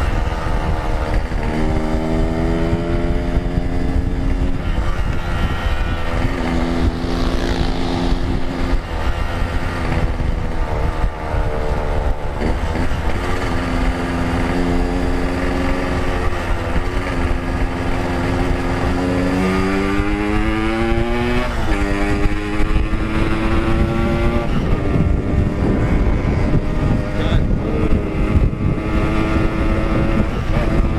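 Yamaha RX-King's 135cc single-cylinder two-stroke engine running under way. Its pitch holds steady in stretches, then climbs steeply as it revs about two-thirds through and drops suddenly. A constant low rumble of wind on the helmet microphone runs underneath.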